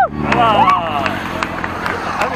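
Motorcycle engine idling steadily at low revs, with people's voices calling out over it about half a second in.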